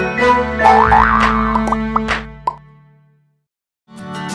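Animated channel-intro jingle with cartoon sound effects: quick rising whistle-like swoops and sharp clicks over the music, which then fades away to silence about three seconds in.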